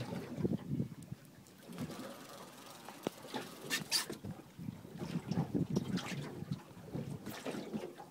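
Water lapping and sloshing against the side of a small boat, swelling and fading irregularly, with scattered knocks and clicks; the sharpest click comes about four seconds in.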